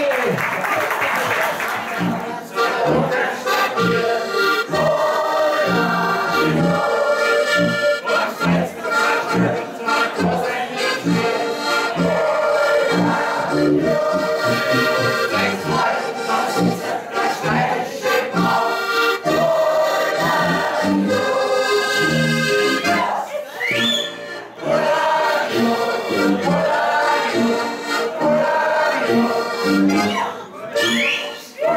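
Several Styrian button accordions (Steirische Harmonika) and a tuba playing a lively folk tune, the tuba marking an even oom-pah beat under the accordion chords. The playing starts about two seconds in.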